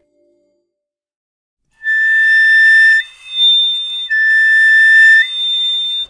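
Piccolo playing two held notes, a step apart, after about two seconds of silence: the lower note, then the upper one about a second later, back down a second after that, and up again near the end. Each note is clear and steady.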